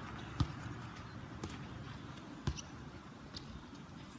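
A few soft thumps, about a second apart, over steady outdoor background noise.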